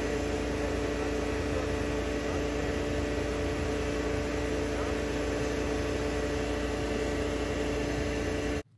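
BMW engine idling steadily at operating temperature, heard from beneath the car by the exhaust, a constant low rumble with a steady hum.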